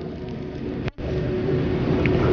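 Low, steady background noise, a rumble and hiss with a faint steady hum. It cuts out completely for an instant just before a second in, then comes back slightly louder.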